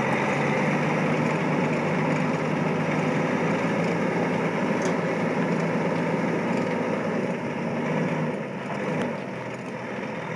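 Caterpillar C13 inline-six diesel of a 2005 Kenworth T800 tractor running steadily as the truck pulls slowly away. It grows fainter near the end.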